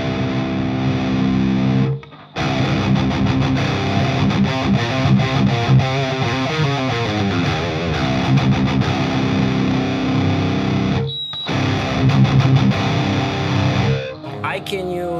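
Heavily distorted electric guitar playing a metal riff through a Driftwood Purple Nightmare amplifier head, boosted by an All-Pedal Devil's Triad overdrive set to low gain. The sound cuts off sharply twice, about two seconds in and again around eleven seconds, where the amp's built-in noise gate closes between phrases.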